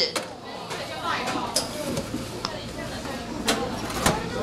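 A metal baking tray is slid onto the rack of a stainless-steel deck oven with a few sharp metallic clinks and knocks. The oven door shuts with a louder bang near the end.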